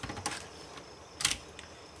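Dell Vostro laptop keyboard being lifted out and laid face down, its plastic keys and frame clattering: a short run of clicks at the start and one sharp click a little past a second in.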